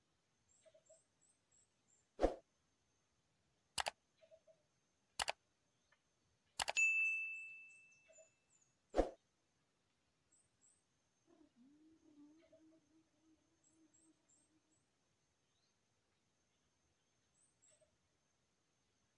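Five sharp clicks spread over the first half, one of them followed by a brief high ring like struck metal, with faint bird calls, including a low wavering call near the middle.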